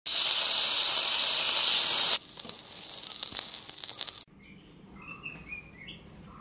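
Butter and masala sizzling loudly on a hot nonstick tawa. About two seconds in it drops to a quieter crackling sizzle with small pops, which cuts off suddenly a little after four seconds, leaving only faint background sound.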